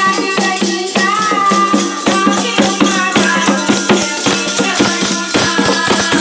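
Women singing a devotional folk song, amplified over a PA loudspeaker, with hand clapping and a rattle shaker keeping a quick steady beat.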